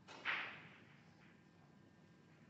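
A single sharp click of snooker balls colliding as the cue ball strikes an object ball, dying away within about half a second.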